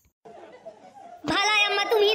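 Speech only: after a brief quiet, a high-pitched voice starts speaking loudly about a second in.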